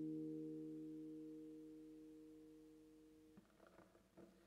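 Acoustic guitar's final chord ringing out and slowly fading, then cut off suddenly about three and a half seconds in, followed by a few faint knocks.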